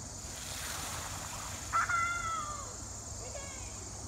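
Bicycle tyres splashing through shallow water running over a paved path. About two seconds in comes a high, falling cry lasting about a second, the loudest sound here, and a shorter falling cry near the end.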